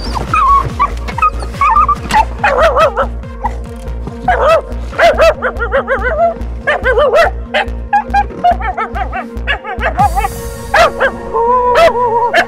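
A dog whining and yipping in repeated wavering calls that rise and fall in pitch, over music with a steady beat.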